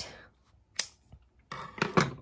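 Scissors snipping through embroidery floss: one short, sharp snip about a second in. A brief rustle and clatter of handling follows near the end.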